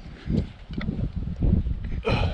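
Wind buffeting the microphone in irregular gusts, with a few faint knocks from handling the cut steel jerry can pieces.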